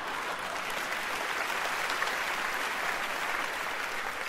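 A large theatre audience applauding steadily, a dense sound of many hands clapping.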